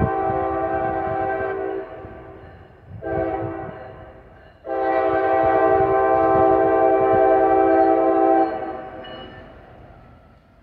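Norfolk Southern diesel locomotive's air horn. One blast ends about two seconds in, a short blast follows about a second later, and a long blast starts about five seconds in and stops about eight and a half seconds in. Under the horn is the low rumble of the oncoming train.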